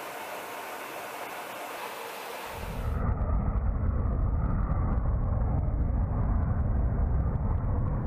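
A steady hiss of rushing air, then about two and a half seconds in a louder, steady deep rumble from the jet engines of a B-2 Spirit stealth bomber flying past.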